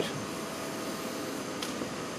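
A steady fan-like whirr with a faint steady hum tone running through it.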